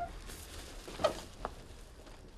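Plastic bag and plastic sheeting rustling and crinkling as cloth is picked up and handled, with a few short crackles, the sharpest about a second in.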